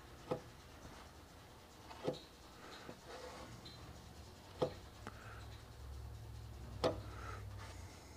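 Plastic body-filler spreader being dragged over wet body filler on a car fender in soft scraping strokes. Four sharp clicks come about two seconds apart. A low hum sets in around the middle.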